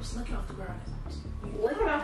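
Indistinct, quiet talking over low background music, with a voice rising near the end.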